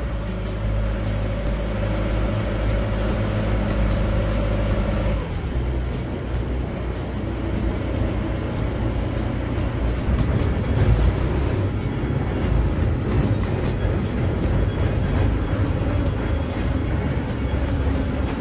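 Boat engine running with a steady hum. About five seconds in it changes to a rougher, uneven rumble, with scattered knocks later on.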